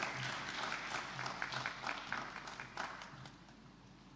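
Audience applauding, a dense patter of clapping that dies away about three seconds in.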